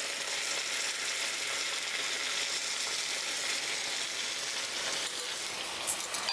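Steady sizzling of masala-fried soya chunks in a hot pan as tea liquor is poured in through a strainer, the liquid hitting the hot oil and spices.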